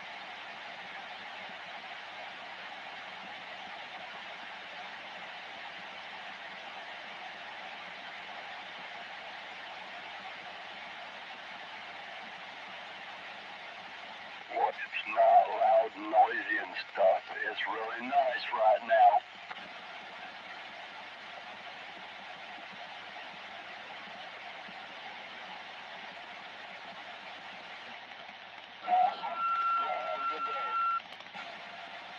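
CB base station radio on AM channel 17 hissing with steady band static. About halfway through, a few seconds of a distant station's voice break through, garbled and unintelligible. Near the end another transmission opens with a steady beep-like tone.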